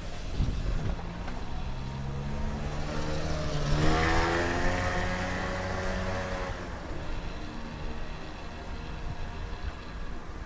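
A motor scooter passing close by and riding away, its engine note swelling to a peak about four seconds in and then dropping in pitch as it fades.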